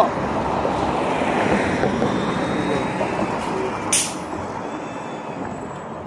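Street traffic going by, with a city bus among it, as a steady rush of noise that eases toward the end. A brief sharp hiss cuts through about four seconds in.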